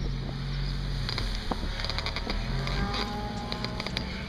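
Mazda MX-5's four-cylinder engine running at low revs as the car pulls away at low speed, a steady low drone with scattered sharp clicks and ticks over it.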